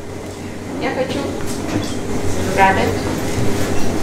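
Steady rumbling room noise with a few brief, indistinct words from a voice away from the microphone, about a second in and again past the middle.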